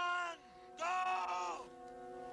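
A voice holding a long, steady drawn-out note that breaks off just after the start, then a second held note of about a second, over steady background music tones.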